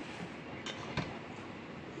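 Quiet handling of an electric hand mixer that is not yet switched on, with two faint clicks near the middle as the mixer and its beaters are moved toward a metal mixing bowl.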